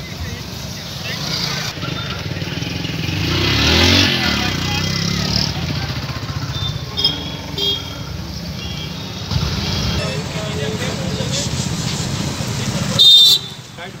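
Road traffic: a steady low rumble, with a vehicle passing and peaking about four seconds in. There are two short horn toots about halfway through and a loud horn blast near the end.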